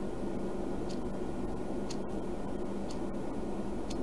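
A clock ticking faintly, about once a second, over a steady low hum.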